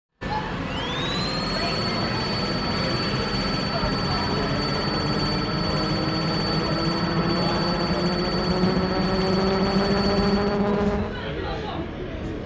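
Electronic intro sound: a high tone that sweeps up in the first second and then holds steady over a low drone whose pitch slowly rises, cutting off about eleven seconds in, after which quieter shop ambience is left.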